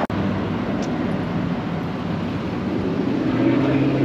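A vehicle engine running in street traffic: a steady low hum over road noise, growing louder and fuller near the end as it comes closer.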